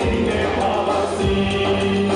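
A song performed with singing over instrumental accompaniment with a steady beat.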